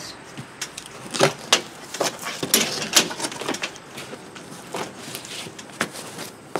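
Taped cardboard box being opened by hand: an irregular run of sharp crackles, scrapes and knocks as the packing tape is cut and the flaps are pulled back, ending as a white foam sheet inside is handled.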